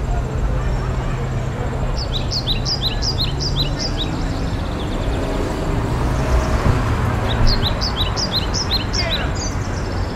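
A songbird singing two phrases of quick, evenly repeated high notes, each about two seconds long, over a steady outdoor background with a low rumble.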